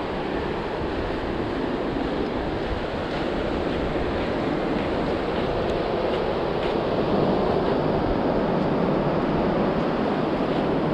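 Ocean surf breaking on the beach, a steady rush that swells a little in the second half, with wind buffeting the microphone.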